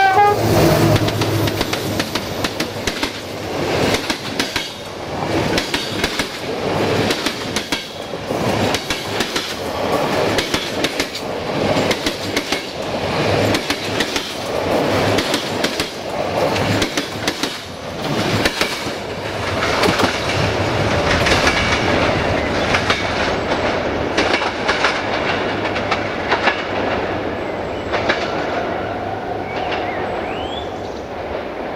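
Passenger train passing close by behind a GM class 65 diesel-electric locomotive. A horn blast cuts off at the very start, then the locomotive and its coaches run past with a loud rolling roar and rapid clickety-clack of wheels over the rail joints, fading over the last few seconds as the train moves away.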